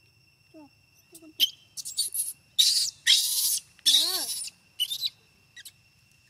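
Baby macaque crying in fear: a few faint squeaks, then a run of loud, harsh, high-pitched screams in several bursts, the longest in the middle, with a wavering pitched cry after it.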